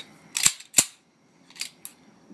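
A Colt 1991A1 (1911-pattern) pistol being cleared: two loud, sharp metallic clacks of the action being worked, then two lighter clicks near the end.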